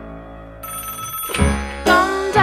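Soft keyboard music fades, then a telephone bell starts ringing a little over half a second in, a fast steady trill. Louder music comes in under it near the end.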